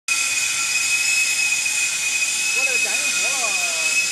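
Steady factory machinery noise: a constant hiss with a high, unchanging whine. A person's voice speaks briefly over it in the second half.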